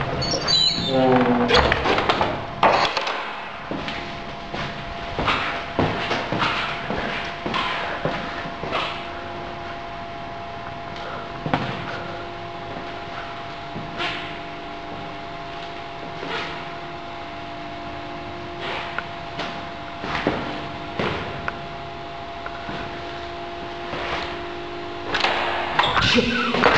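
Irregular knocks and clicks of a door being handled, with a steady hum that comes in about a third of the way through and stops just before the end.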